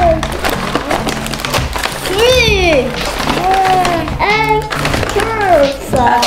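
Background music with voices, over the crinkling of a brown paper bag and plastic packets as groceries are unpacked onto a wooden table.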